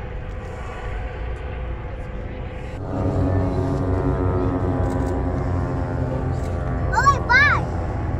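Engines of a formation of propeller planes droning overhead, one steady tone that falls slowly in pitch as they pass. It starts with a cut about three seconds in, after low outdoor noise. Near the end, two short whistle-like calls rise and fall.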